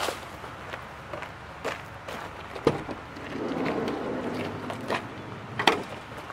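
Footsteps on a gravel track, a series of short crunches, with a sharp click near the end as the van's sliding side door handle is gripped.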